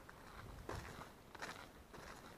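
A few faint, soft footsteps, one about two-thirds of a second in and another near the middle, over an otherwise quiet background.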